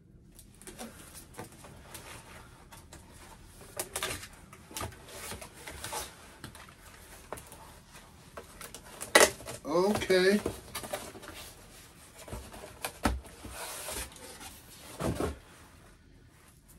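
Cardboard mailer and the plastic-bagged, board-backed comic inside being handled: rustling and scraping with scattered sharp knocks and clicks, the loudest just after nine seconds and near thirteen seconds. A brief murmur of voice comes about ten seconds in.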